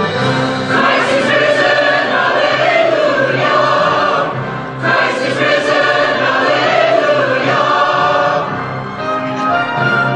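Mixed church choir of men's and women's voices singing, with instrumental accompaniment holding low notes underneath. The voices break off briefly about halfway through, then start a new phrase.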